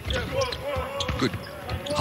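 A basketball being dribbled on a hardwood court, with sharp separate bounces.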